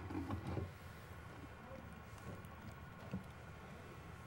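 Quiet studio room tone, with a faint low murmur in the first half second and a single soft tap about three seconds in.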